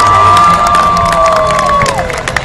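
Crowd cheering and clapping along a parade route, with one long, high, held cheer over it that drops away near the end and a lower voice sliding down beneath it.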